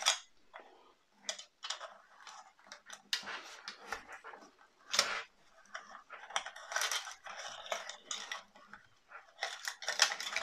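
Handling noise: scattered light clicks, taps and rustles as cables are pushed by hand through a hole in a 1:8 scale die-cast DeLorean model's chassis. The sharpest tap comes about five seconds in.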